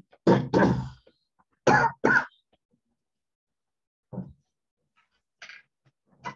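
A person coughing and clearing their throat: two pairs of short, loud coughs in the first couple of seconds, then a softer one about four seconds in.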